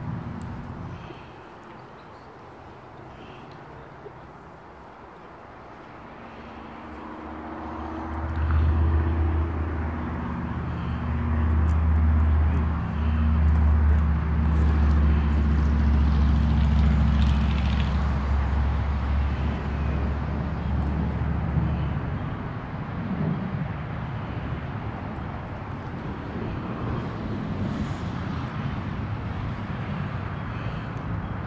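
A motor vehicle's engine running nearby: a low drone swells in about eight seconds in, holds for about fourteen seconds, and fades out around twenty-two seconds, leaving outdoor background noise.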